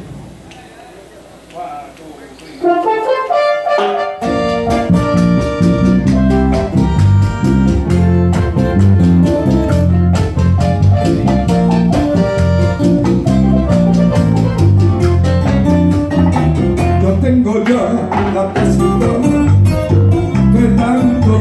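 A live Latin band of acoustic guitar, electric bass, keyboards and hand drums plays an instrumental introduction, with no singing. After a few quiet seconds with scattered notes, the full band comes in about three seconds in and keeps a steady, driving rhythm with a heavy bass line.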